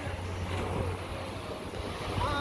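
Outdoor background sound: a steady low hum with some wind on the microphone and faint voices of children playing.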